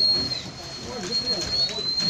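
A high, thin whistling tone held steady, dipping in pitch about half a second in and sliding back up near the end, over people's voices.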